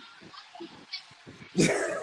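A quiet stretch for over a second, then a man bursts out in loud laughter near the end, going into short choppy laughing pulses.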